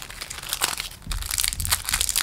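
Plastic wrapping from a trading-card pack crinkling irregularly in the hands as the cards are handled, with the crackles growing denser in the second half.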